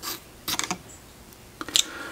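A few light, sharp metal clicks as flat-nose locking-ring pliers work the input shaft locking ring off a transfer case, at the start, around halfway and near the end.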